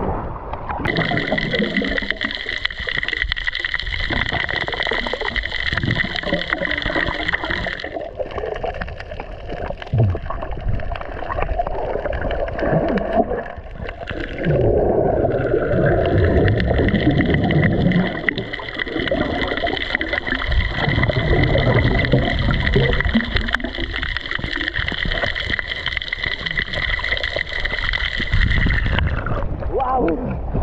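Water churning and bubbling around an underwater camera as a spearfisher swims and dives at night, with a steady high-pitched whine running through most of it that drops away for several seconds in the middle.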